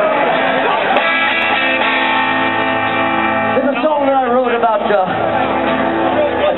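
Electric guitar chord strummed and left ringing through a live PA, with a man's voice starting to talk over it a little past halfway through.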